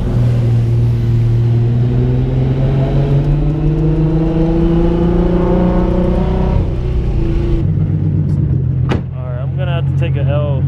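Nissan 350Z's V6 engine heard from inside the cabin as the car accelerates, its note climbing steadily for several seconds and then falling away about seven seconds in. Near the end a man starts talking.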